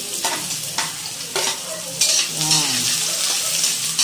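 Chopped onions sizzling in hot oil in a metal wok, with a spatula stirring and scraping against the pan in scattered strokes.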